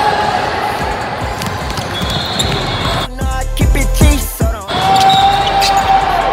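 A hip hop backing track with a heavy bass beat plays over the game audio of an indoor basketball court, where a ball bounces on the hardwood amid gym noise. The music's beat and bass come through more plainly about halfway through.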